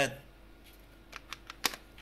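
A quick run of about five light clicks and taps as a Samsung 850 EVO SSD and its box are handled. The clicks fall in the second half, and the sharpest is near the end.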